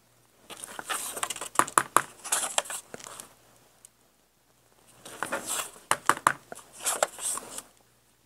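Index cards and a clear acrylic stamp block being handled on a cutting mat: paper rustling with sharp clicks and taps as the block is set down and pressed. It comes in two spells, one about half a second in and another about five seconds in.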